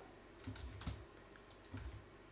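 Faint keystrokes and clicks on a computer keyboard and mouse: a short run of taps about half a second in and another near the end.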